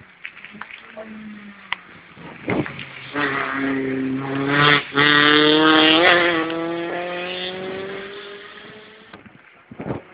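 A rally car passes at speed on a special stage: its engine builds up as it approaches, is loudest as it goes by with a brief cut in the sound just before, then falls in pitch and fades as it drives away.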